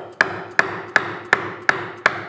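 A 90-degree corner chisel being struck repeatedly to chop a square corner into the end of a routed groove in wood: an even run of sharp strikes, nearly three a second, each with a brief ring.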